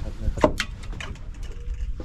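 A few quick knocks and clicks from handling the landing net on a boat deck, over a steady low rumble.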